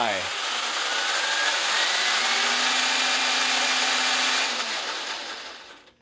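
Electric drive and all-metal gear drivetrain of a 1/10-scale Capo CD15821 8x8 RC truck running its wheels in the air in high gear with the diffs locked: a steady whirring grind with a whine that climbs in pitch over the first couple of seconds, then winding down and stopping about five seconds in.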